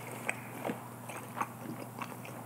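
A person chewing a mouthful of food close to the microphone, with a few soft mouth clicks.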